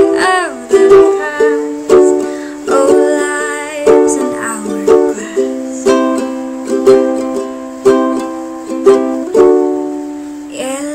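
Ukulele strummed in an instrumental passage: a chord struck about once a second, with lighter strums ringing between.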